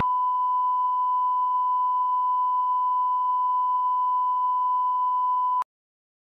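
Steady single-pitched test tone, the line-up tone a TV station broadcasts with its test card after sign-off. It holds one unchanging pitch and cuts off suddenly near the end.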